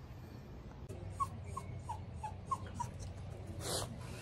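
Cavapoo puppy whimpering: a string of six short, high, slightly falling whines in quick succession, followed near the end by a brief rustle.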